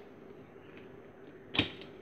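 Quiet room tone with a faint steady hum, broken about one and a half seconds in by a single sharp click.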